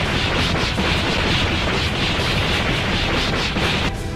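A loud, steady rumbling noise with a quick run of faint crackles through it: a sound effect for a fight in an animated cartoon. It drops off sharply at the end.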